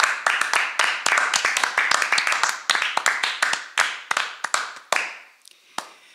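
A small group of people applauding, a dense patter of hand claps that thins out and dies away about five seconds in, with a couple of last single claps near the end.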